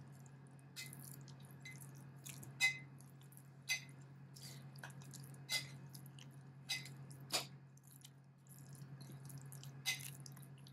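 A metal spoon stirring a wet eggplant and walnut mash in a glass bowl, with about eight faint, irregularly spaced clicks of the spoon against the glass.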